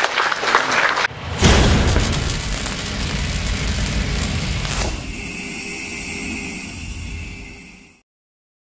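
Brief applause in the first second, then a logo sound effect: a sudden deep boom with a whooshing swell that slowly dies away. A few seconds later it changes to a steady high tone that fades out at the end.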